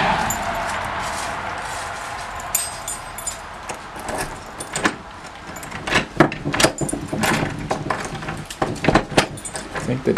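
A metal key ring jangling while keys scrape and click in a doorknob lock, with a fast run of sharp metallic clicks over the second half. A fading rushing noise fills the first couple of seconds.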